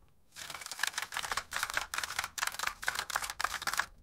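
A rapid, irregular clatter of sharp clicks, like fast typing, starting just after the music fades out and lasting about three and a half seconds before cutting off suddenly.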